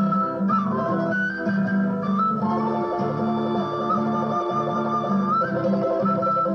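Andean folk ensemble playing live: acoustic guitar and other plucked strings keep up a chordal rhythm while an end-blown wooden quena flute carries a single melody with slides between notes above them.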